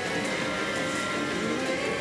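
Music and sound effects from a CR Hokuto no Ken 5 Hasha pachinko machine during its battle animation, over a steady noisy background.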